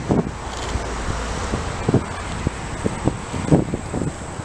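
Wind buffeting a handheld camera's microphone outdoors: a steady low rumble and hiss, with a few faint soft knocks.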